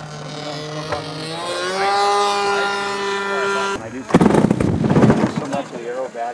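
A small piston engine runs steadily, rises in pitch about a second and a half in, holds there, then cuts off abruptly near the four-second mark. A loud burst of rushing noise follows for about a second and a half.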